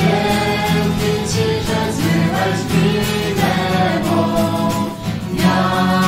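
Christian worship song: a group of voices singing together.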